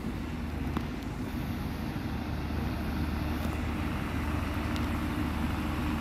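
Northern Ireland Railways Class 3000 diesel multiple unit drawing into the station: a steady low engine hum that grows gradually louder as the train approaches.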